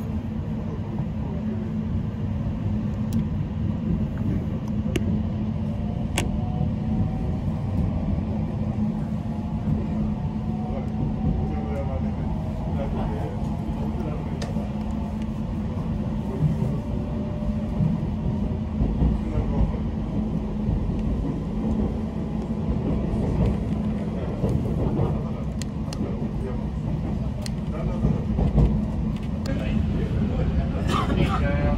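Inside an electric commuter train pulling out of a station and gathering speed: a steady low rumble of wheels on rail with a constant hum, and a faint whine that rises in pitch through the first half as it accelerates. A few light clicks from the running gear now and then.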